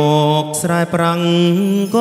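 Male vocalist singing a Cambodian romantic ballad into a microphone through the PA, with live band backing. He holds long, drawn-out notes that step between pitches.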